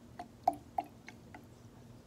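Water poured from a plastic measuring cup into a plastic bottle of coloured water, heard as five small separate plinks of water dropping into the liquid, fading out after about a second and a half.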